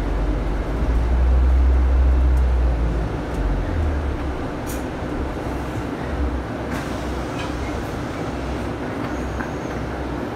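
Double-decker bus in motion, heard from inside its upper deck: a steady deep rumble of engine and road noise that swells about a second in and eases after about three seconds, with a few faint rattles and clicks.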